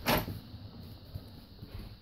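An interior door's lever handle and latch clicking sharply as the door is opened at the very start, followed by quiet, low rumbling movement noise as it swings open.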